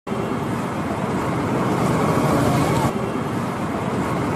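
Steady road traffic and street noise, with indistinct voices in the background.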